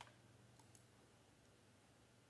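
Near silence with a few faint clicks of a computer mouse, the presenter right-clicking to bring up the slideshow menu.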